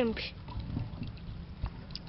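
Hands rummaging in a bucket of freshly caught shrimp and small fish in a little water, giving faint scattered wet clicks and small splashes.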